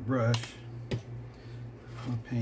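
Two light, sharp clicks of a paintbrush knocking against a paper-plate palette, a little over half a second apart, over a steady low hum, with a brief murmur of voice at the start.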